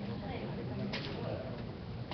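Faint, indistinct talking in a room over a low steady hum, with one sharp click just before a second in.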